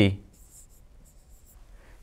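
Faint scratching of a stylus writing by hand on an interactive whiteboard screen, in short strokes.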